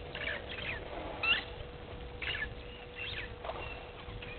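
Wild birds calling: a string of short chirps and whistled notes, the loudest a sweeping whistle about a second in, over a faint steady hum.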